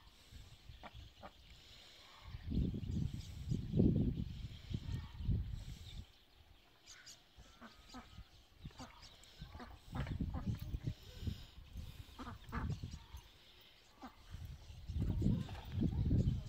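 Domestic ducks quacking now and then while dabbling at a metal water basin, with scattered small clicks and splashes. Low rumbling gusts on the microphone come and go three times and are the loudest sound.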